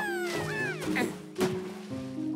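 Cartoon background music with the Vegimals' high, squeaky chattering calls falling in pitch in the first half. About a second in come two short, sharp knocks, the second the loudest.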